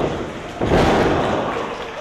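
A wrestler's body slamming onto the ring mat a little over half a second in, a heavy thud with the ring's rumbling boom that dies away over about a second.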